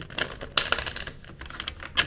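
Tarot cards being shuffled: a few light clicks, then a dense rapid run of card clicks from about half a second in, lasting under a second.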